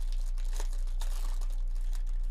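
A foil wrapper of a Topps 2024 Series 2 baseball card pack being torn open and crinkled by hand: an irregular run of crackles, over a steady low hum.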